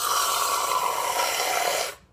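Aerosol can of whipped cream spraying straight into a mouth: one loud hiss of almost two seconds whose pitch sinks a little, starting and stopping suddenly.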